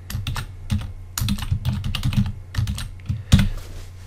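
Typing on a computer keyboard: irregular runs of key clicks with short pauses between them, and one sharper key strike late on.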